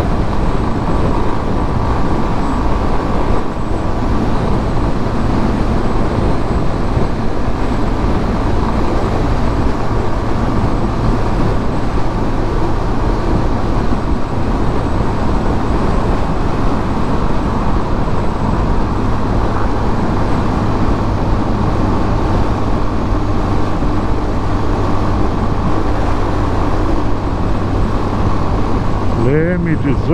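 Yamaha Fazer 250 single-cylinder engine running steadily at highway cruising speed, under a loud, unbroken rush of wind and road noise on the rider's camera microphone. A man's voice starts near the end.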